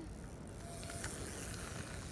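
Tyres of a mini BMX bicycle rolling on a gravel path, a soft hiss that swells about half a second in and eases off, over a low wind rumble on the microphone.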